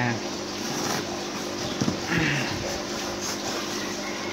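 Packing tape being picked at and peeled off the edge of a styrofoam shipping box, a scratchy noise over a steady low hum.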